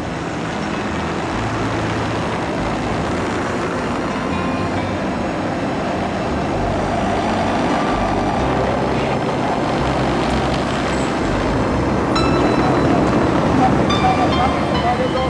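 Steady outdoor street noise from car traffic, growing a little louder, with soft background music underneath.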